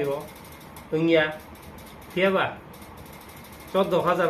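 A man speaking in a few short, halting phrases with pauses between them.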